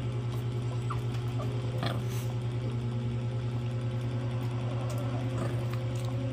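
Close-miked chewing over a steady low electrical hum, with a couple of faint utensil clicks.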